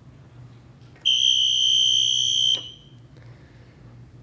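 Electronic alarm buzzer, likely the red push-button 'danger' box on the stage table, sounding one steady, loud, high-pitched tone for about a second and a half. It starts about a second in and cuts off sharply.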